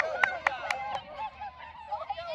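Hand claps, about four a second for roughly a second, over children's raised voices.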